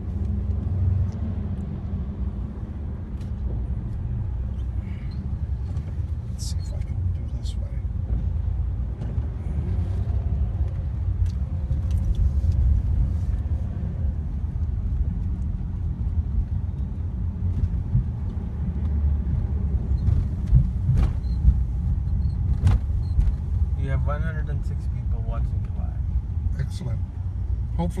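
Car driving in slow city traffic, heard from inside the cabin: a steady low rumble of engine and tyre noise, with a few faint scattered clicks.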